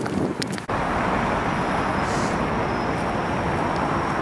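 Steady city road-traffic noise, an even hiss of passing vehicles that starts abruptly a little under a second in, after a few faint clicks.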